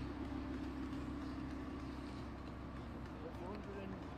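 Lamborghini Huracán V10 idling with a low, steady hum, faint voices behind it.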